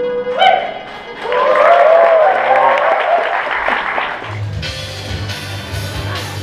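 A plucked-string instrumental piece ends, and an audience in a large hall applauds and cheers for about three seconds. About four and a half seconds in, background music with a steady beat and bass comes in.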